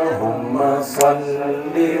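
A man chanting Arabic blessings on the Prophet (salawat) through a microphone and PA: one sung line trails off, there is a short break, and the next line begins. A single sharp click sounds about a second in.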